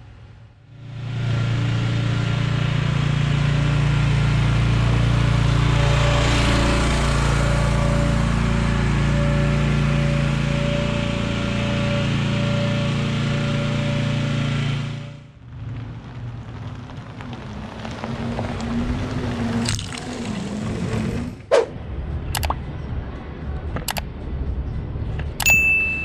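Music with sustained tones, starting about a second in and stopping suddenly about fifteen seconds in. After it comes a quieter, steady low rumble with a few sharp clicks near the end.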